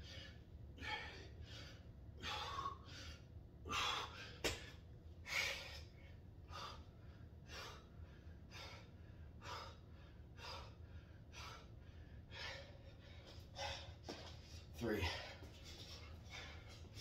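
A man panting hard while doing burpees, heavy gasping breaths about one a second. There is a sharp knock about four seconds in and a short falling groan near the end.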